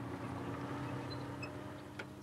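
Armoured personnel carrier's engine running steadily: a low hum with a few held tones, fading slightly near the end.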